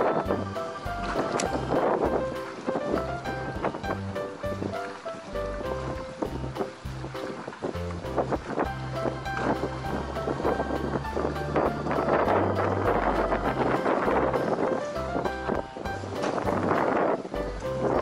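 Background music with a stepping bass line, over a hiss of wind and water.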